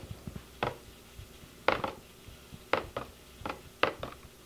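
Water dripping from the drainage holes of soaked plastic seed cell packs onto a plastic tray: about five separate small taps, irregularly spaced. The drip shows the coco coir mix is wet right through.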